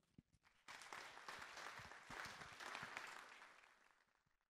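Audience applauding, faint, starting under a second in and dying away near the end.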